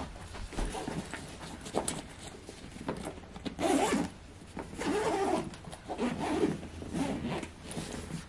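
Backpack zipper being pulled in several short strokes, with rustling of the bag around them.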